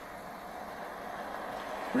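Steady, even background noise of a vehicle idling, heard through a police body camera's microphone.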